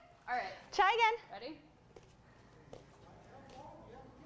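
A woman's voice in two short laughing bursts in the first second or so, then low room sound with faint murmured talk.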